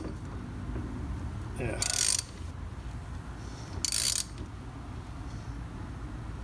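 A 3/8-inch ratchet turning a screw-type caliper piston tool, winding a rear brake caliper piston back into its bore. Two short bursts of ratchet clicking come about two seconds apart, around two and four seconds in, as the handle is swung back.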